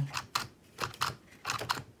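About half a dozen sharp, irregular clicks and taps from the plastic and cardboard parts of a Wani Wani Panic crocodile whack-a-mole toy being handled after a reset.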